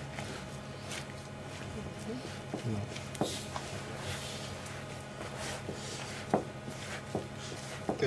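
Hands working a sticky yeast dough in a plastic tub: faint scattered soft knocks and rustles over a low steady room hum, with a sharper knock about three seconds in and another past six seconds.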